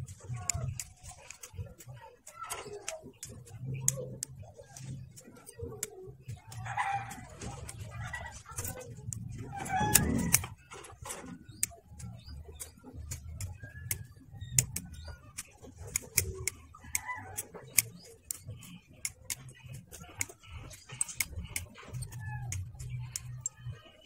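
Hobby side-cutters snipping plastic model-kit parts off their runners: many sharp, irregular clicks. Birds call in the background, with the loudest call about ten seconds in.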